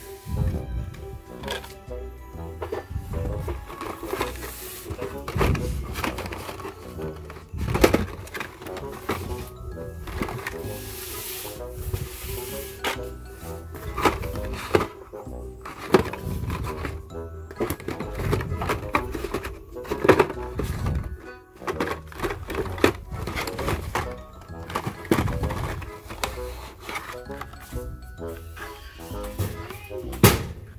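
Background music over irregular clacks and rustles of plastic blister-carded Hot Wheels cars being picked out of a cardboard box and laid down.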